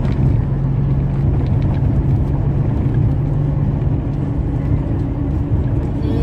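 Truck cab interior while cruising: the diesel engine's steady low hum under a continuous rumble of tyres and road noise.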